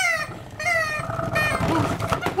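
Paper party blowers blown in several short buzzy squawks, then a longer steady note.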